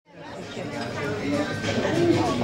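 Several people's voices chattering in a large, echoing space, fading in from silence at the start.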